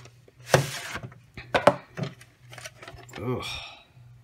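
A plastic VHS cassette and its case being handled: several sharp clicks and knocks as the tape is taken out, with a short grunt near the end.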